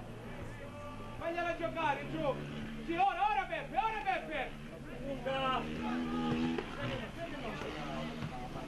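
Voices of players shouting on an open football pitch, several short calls, over a steady low hum.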